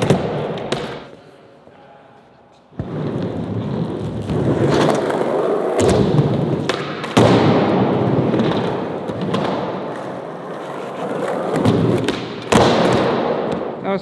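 Skateboard wheels rolling over a smooth skatepark floor, starting abruptly about three seconds in and running on, with a few sharp thuds of the board on the ground.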